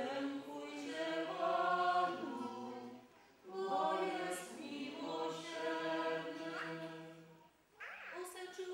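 Unaccompanied singing led by a woman's voice, with other voices, including a lower one, singing along, in two long held phrases with a short breath between them about three seconds in.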